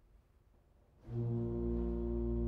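Organ: near silence for about a second, then a loud, low chord enters and is held, with deep pedal notes beneath it.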